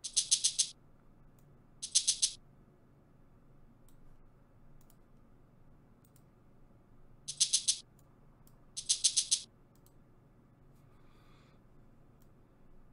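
A programmed percussion sample in FL Studio played back as short, rapid rolls of a high, rattling hit: four rolls of several quick strikes each, two in the first couple of seconds and two more about seven and nine seconds in.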